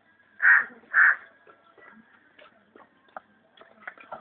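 Two loud, harsh calls about half a second apart, followed by faint scattered clicks and taps.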